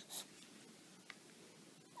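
Near silence: room tone, with a brief soft hiss just after the start and one faint click about a second in.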